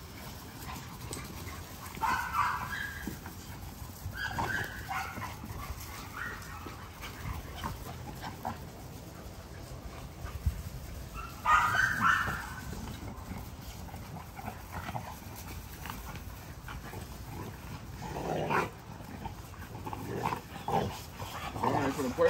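American bully puppies playing together and giving short barks and yips in a few separate outbursts, loudest about two seconds in and again about twelve seconds in.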